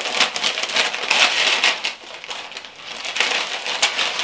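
Paper plant wrapping crinkling and tearing as it is pulled off a potted plant: irregular rustling, busiest in the first two seconds and again towards the end, with one sharp snap just before the end.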